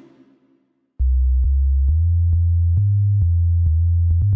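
FL Studio 3x Osc synthesizer playing a low bass line of plain, sine-like tones, starting about a second in and stepping to a new note about twice a second, with a click at the start of each note.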